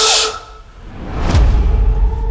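A child's whispered hushing "shh" that stops almost at once, then a swelling whoosh building into a deep cinematic boom hit about a second and a half in, its low rumble carrying on.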